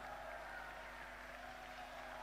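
Faint steady background noise with a low, steady hum underneath; no distinct sound events.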